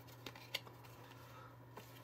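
Quiet room with a faint low hum and a single small tick about half a second in, from a cardboard insert and a plastic toy case being handled and set down.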